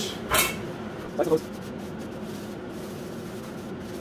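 A brief rustle of a paper towel, then a steady low background hum while a steel frying pan is handled.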